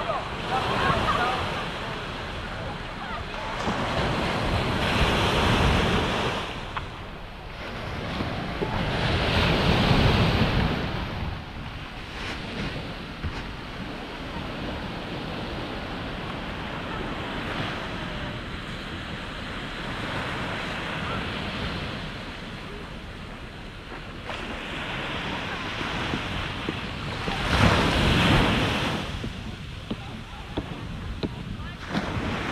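Small waves breaking and washing up a sandy beach, the surf swelling louder every several seconds, with the strongest surges about ten seconds in and near the end. Wind rumbles on the microphone throughout.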